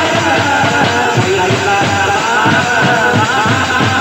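Indian band baja music played loud: dense, fast drum beats and clashing metal hand cymbals under a wavering melody line, with no break.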